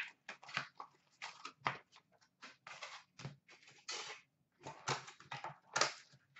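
Hands handling a cardboard box of hockey cards and its packs: a run of short, irregular rustles, scrapes and taps as the packs are taken out and set down in a stack.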